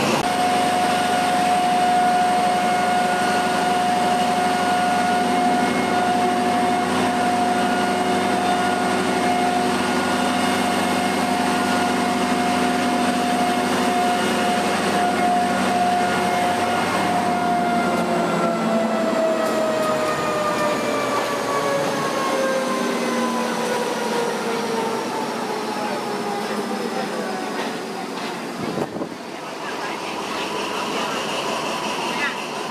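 A train's mechanical whine at the platform: a steady hum of several tones that holds level for about the first half, then slides slowly down in pitch through the second half.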